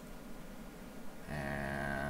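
A man's voice holding a low, steady hum for about a second, starting a little past the middle, without forming words.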